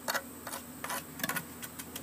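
Steel trowel scraping and tapping against wet concrete mix and the rim of a concrete block core as the mix is levelled and packed down: a handful of short, sharp clicks and scrapes.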